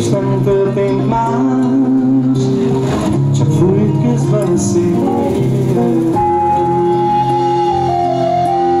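Live band music led by an acoustic guitar with keyboard accompaniment. Near the end a long held high note comes in and steps down once.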